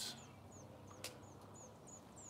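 A small bird chirping in the background, a faint series of short, high, downward-sliding notes about three a second. A single sharp click sounds about a second in.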